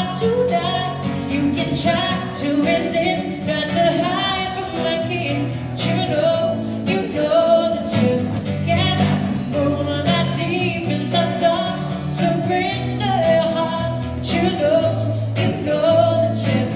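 A woman singing a ballad live into a handheld microphone over band accompaniment, amplified through a concert hall's sound system.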